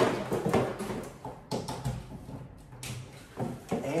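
Handling noises: a sharp knock at the start, then irregular bumps, clicks and rustles as a plug-in car battery charger's cord is handled and plugged into an outlet.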